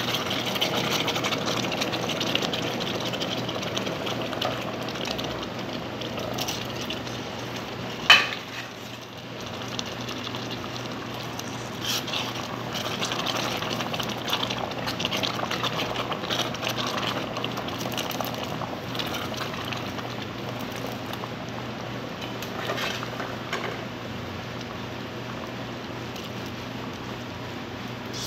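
Caramel-and-milk syrup with hominy corn boiling in a steel pan, a steady bubbling and crackling. A single sharp knock about eight seconds in.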